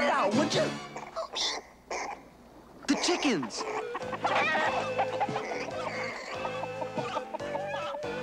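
Animated-cartoon flock of chickens clucking, over a background music score that settles into a steady repeating bass line about halfway through, after a short dip in level.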